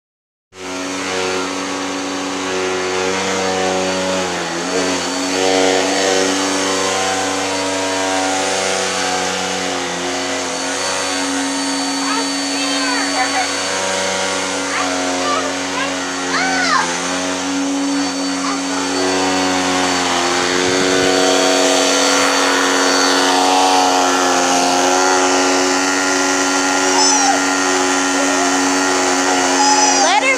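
Upright vacuum cleaner running steadily, its motor giving a constant hum with a steady whine.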